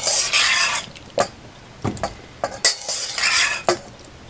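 A slotted spoon scraping along the inside of a stainless steel mixing bowl while scooping syrupy peach quarters, in two scrapes about two and a half seconds apart, with several sharp clicks and knocks of the utensil against the metal bowl and canning funnel between them.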